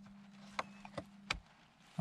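Three light plastic clicks from the rotary rear-wiper switch on a Citroën C3's wiper stalk as it is turned through its detents, about half a second apart. A low steady hum stops at the last click.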